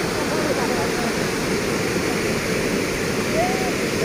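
Muddy floodwater rushing and churning through a breach in an earthen river embankment, a steady, loud rush of water with no let-up.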